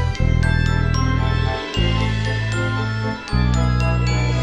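Instrumental passage of a waltz song with no singing: high struck notes ring out over held low bass notes that change about every second and a half.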